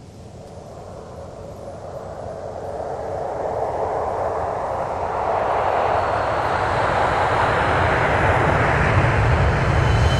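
A produced logo sound effect: a rushing, rumbling noise that swells steadily louder throughout, much like a jet aircraft flying in.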